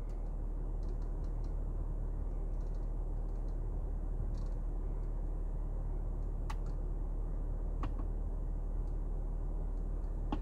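Scattered soft clicks of the BMW iDrive controls being worked as the menus are stepped through, with a few sharper clicks about six to eight seconds in, over a steady low hum in the car cabin.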